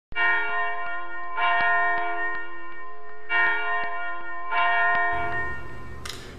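A bell struck four times, in two pairs, each strike ringing on with many overtones; the ringing dies away near the end.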